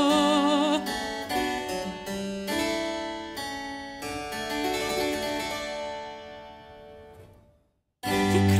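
A singer's held note with vibrato ends about a second in. A harpsichord continuo then plays a short passage of plucked notes and chords, each dying away quickly, and the music fades to silence near the end.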